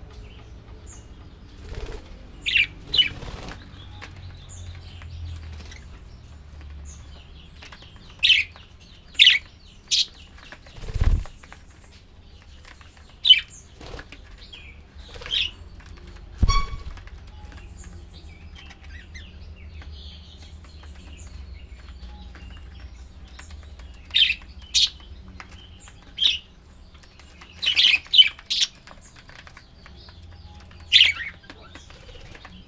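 A flock of budgerigars giving short, sharp chirps in scattered clusters every few seconds. Twice, around the middle, comes a low thump of wings as birds fly down close by.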